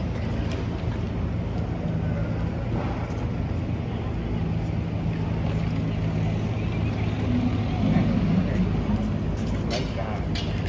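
Steady low drone of engines running in city street noise, with a faint murmur of voices.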